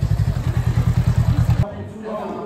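An engine running close by: a low rumble pulsing at about nine beats a second, cut off suddenly about a second and a half in.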